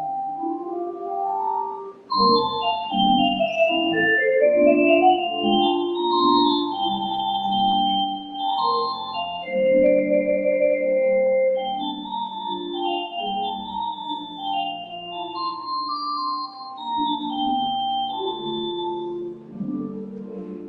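Instrumental offering music on a keyboard, organ-like: a melody of held notes moving high above slower chords. It gets much louder about two seconds in.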